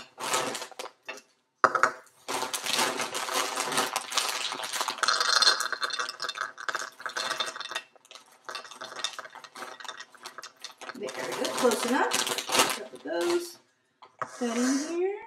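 Round pretzels poured from a plastic bag into a small measuring cup: a dense rattle of many small clicks and clatters, with the bag rustling, broken by a short pause about eight seconds in.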